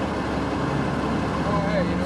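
Steady city street noise carried mostly by a transit bus idling at the curb, a low, even hum. A voice speaks briefly near the end.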